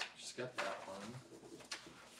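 Faint speech in a meeting room: a person's voice saying a short word, with a sharp click at the very start and quiet room sound after.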